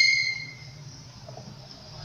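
A man's voice trailing off at the end of a word, then a pause with only faint room noise and a low steady hum.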